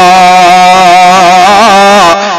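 A male voice holds one long sung note in an unaccompanied Sindhi naat, at a steady pitch with a slight waver about a second and a half in.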